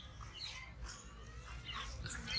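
Faint outdoor background with a few short, high animal calls, one early and another near the end.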